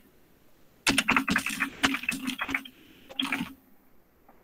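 Typing on a computer keyboard: a quick run of keystrokes lasting under two seconds, a short pause, then a brief second run.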